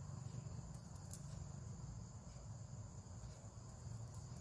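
Quiet background with a faint steady high-pitched tone over a low hum, and a soft click of metal knitting needles about a second in as stitches are knitted.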